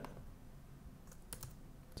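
Faint computer keyboard typing and mouse clicks: a few sharp, separate clicks, mostly about a second in and near the end, over low hiss.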